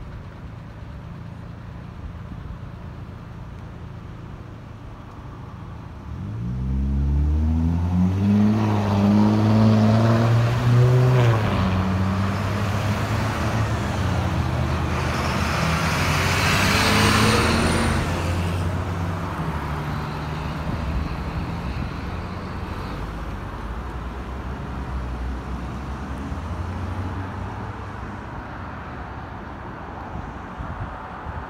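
Box truck engine pulling away close by, its pitch climbing, dropping at a gear change and climbing again, with tyre and road noise swelling as it passes and then fading into steady street traffic.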